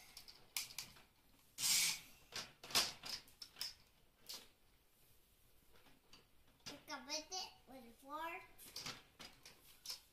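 Clicks and knocks of hard plastic as a toy forklift is handled and bumped against a toy truck, the loudest a short burst about two seconds in. Near the end a young child's voice is heard for a couple of seconds.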